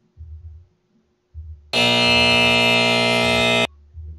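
A buzzer sound effect (buzzer_E_major) plays on a PowerPoint timer slide: one loud, steady electronic buzz about two seconds long, starting nearly two seconds in and cutting off abruptly. It signals that the countdown time is up.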